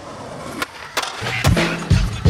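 Skateboard wheels rolling on concrete, with a couple of sharp clacks of the board in the first second. A hip-hop beat with heavy kick drums comes in just after a second.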